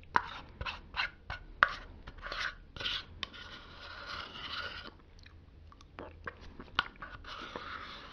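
Plastic spoon scraping yogurt from the inside of a plastic yogurt tub, close to the microphone. A run of sharp clicks in the first two seconds, then longer rasping scrapes, the longest about a second and a half in the middle, quieter for a while, and another scrape near the end.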